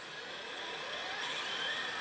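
Steady din of a pachinko parlor: a wash of noise from many machines, with faint electronic tones from their sound effects and a faint rising tone about a second in.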